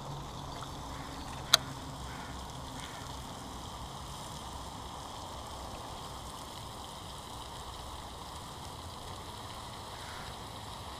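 Steady outdoor hiss with a single sharp click about one and a half seconds in, and a faint low hum that fades out after about three seconds.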